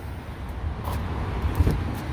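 Steady outdoor background noise with a low rumble, like distant traffic, with a light knock about one and a half seconds in as the phone is handled at the car's rear door.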